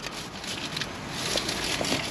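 Soft rustling and crackling of a thin plastic shopping bag and clothing being handled on a car seat.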